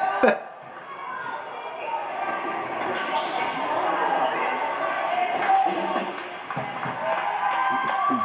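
A basketball bouncing on a gym floor amid the chatter of spectators. There is a sharp knock of the ball just after the start.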